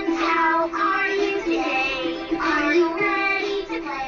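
Fisher-Price Linkimals Musical Moose playing a children's song: a bright sung melody over electronic music from the toy's speaker, stopping near the end.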